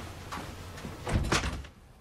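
A door being opened and pulled shut, with two loud knocks of it closing a little over a second in.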